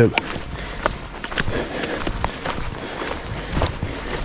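A hiker's footsteps on a rocky dirt trail strewn with dry leaves, with trekking pole tips striking the ground: irregular sharp taps and crunches, a couple to a few each second.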